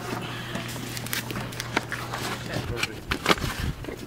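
Bags and belongings being shoved into a car's cargo area: scattered knocks and rustles, several times, over a steady low hum.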